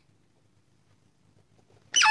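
Quiet room tone with a faint low hum and no distinct sound.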